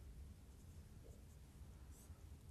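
Faint sound of a marker writing a word on a whiteboard, barely above near silence and room hum.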